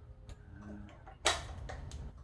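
Light clicks of a small rifle accessory being handled and fitted by hand, with one sharper click about a second and a quarter in.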